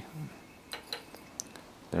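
A few light metal clicks and a brief ringing clink, about four in all, from a magneto's cylindrical metal end cap being handled and set down on a steel workbench.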